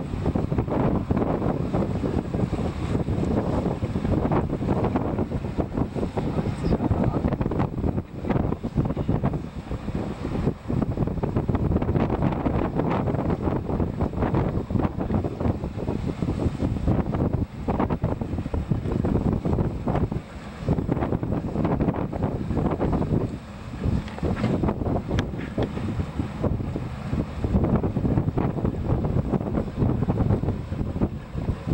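Wind buffeting the microphone in gusts on an open boat, over the wash of choppy sea and waves.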